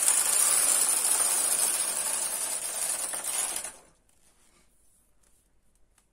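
Carriage of a punch-card home knitting machine pushed along the needle bed, knitting one row: a steady mechanical run lasting about four seconds that stops abruptly.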